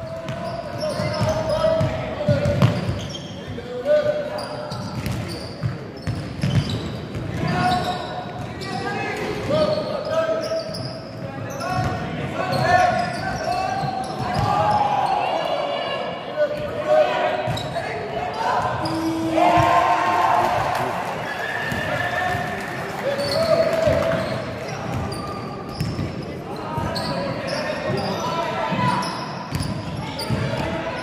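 Basketball bouncing on a hardwood court in a large, echoing sports hall, among the shouts of players and spectators.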